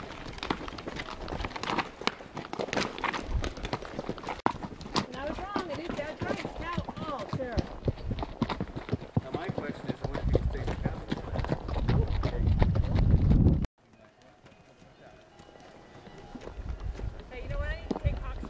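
Horses walking on a dirt trail, hooves clopping, with indistinct voices. A low rumble builds, then the sound cuts off abruptly about three-quarters of the way through and comes back quieter.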